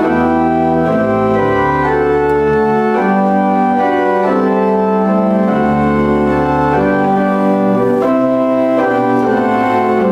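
Church pipe organ playing a hymn: full sustained chords over deep pedal bass notes, the harmony changing about once a second.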